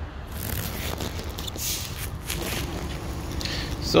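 A few short metallic scrapes and rubs as a wrench is handled against the rear brake caliper hardware, over a steady low background hum.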